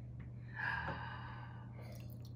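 A person gasps, a short breathy intake of surprise about half a second in that trails off, over a steady low hum.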